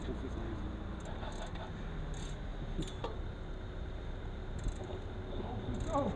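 Quiet street background at a standstill: a steady low rumble with faint, distant voices and a few brief high hisses.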